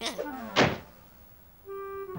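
A cartoon sound effect: a pitch sliding steeply down, ending in a heavy thud about half a second in. Near the end a held woodwind note of the background music comes in.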